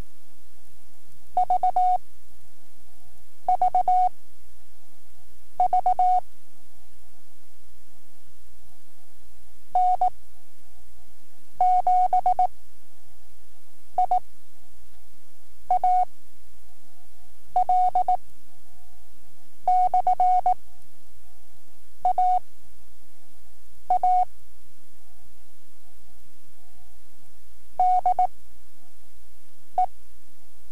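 Morse code sent as a single steady pitched tone at slow novice speed: quick groups of dots and dashes form one character about every two seconds, with longer gaps between words. A steady hum runs underneath.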